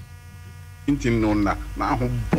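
Steady electrical mains hum with a buzz of evenly spaced overtones, heard on its own for about the first second before a voice comes back in over it.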